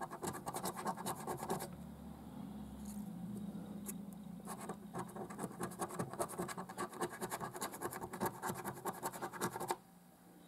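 Silver scratch-off coating on a lottery scratch card being scratched away in quick rapid strokes, with a lull of a couple of seconds in the middle. The scratching stops abruptly near the end.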